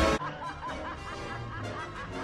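An animated film villain laughing, a quick, even run of "ha"s, over orchestral music from the soundtrack. It comes in just after a louder musical passage cuts off.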